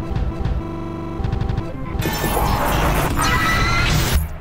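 Sci-fi title-sequence music with sustained chords and a fast stuttering pulse. About halfway through, a loud, harsh crash of noise swells with rising tones and cuts off abruptly at the end.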